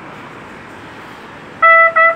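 A pause in solo trumpet playing, filled only by a steady background hiss. Near the end the trumpet comes back in on one note, tongued twice.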